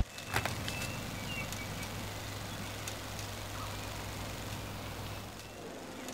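Quiet outdoor ambience: a steady low hum of distant traffic, with a sharp click just after the start and a few faint short chirps.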